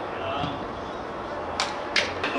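Two sharp knocks of a football being struck, about a third of a second apart, near the end, with faint shouting from players on the pitch.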